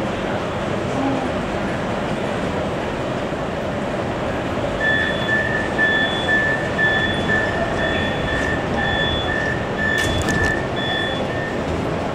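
Door-closing warning beeper of a Metrowagonmash metro car, a high steady-pitched beep repeating about twice a second, starting a little before halfway. Near the end the sliding doors shut with a clunk, over the steady hum of the train and station.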